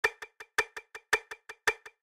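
Metronome click at 110 beats per minute, sounding triplets: a louder click on each beat followed by two softer ones, about five and a half clicks a second.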